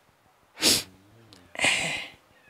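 A crying woman's sharp, noisy breath about half a second in, then a breathy sob near the end.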